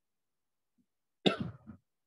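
A person coughs once, a little over a second in: a sudden sharp burst with a short second part.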